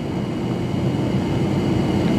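A steady low rumble, mechanical in character, growing slowly louder.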